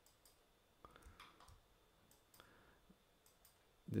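Faint, scattered clicks and brief scrapes of a computer mouse being clicked and dragged while painting, over quiet room tone.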